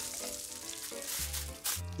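Beef steak and butter sizzling in a hot frying pan, a steady crackling hiss. A brief rustle near the end, likely the aluminium foil being pressed over the resting steak.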